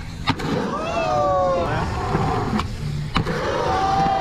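Skateboard on concrete: a sharp clack of the board hitting the ground just after the start, wheels rolling, and another sharp clack about three seconds in. Voices rise and fall in between.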